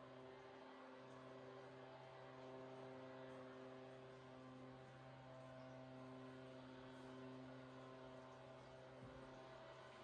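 A faint, steady low hum with several evenly spaced overtones, unchanging in pitch.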